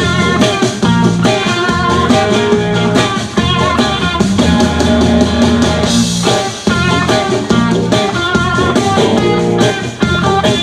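Live rock band playing an instrumental passage, with electric guitars over a drum kit.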